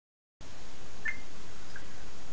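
Steady hiss of recording background noise that cuts in about half a second in after dead silence, with one faint short chirp about a second in.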